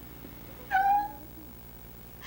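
A woman's single short, very high-pitched squealed "No!", about two-thirds of a second in.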